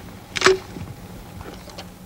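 A single sharp metallic clack about half a second in, from hands working a 40 mm under-barrel grenade launcher on an M16 rifle, followed by a few faint clicks.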